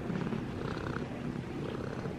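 Tabby cat purring close to the microphone, a steady low rumble.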